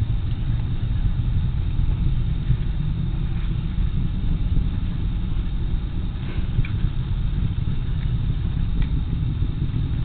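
Low, steady rumble of a distant Delta IV rocket climbing toward orbit.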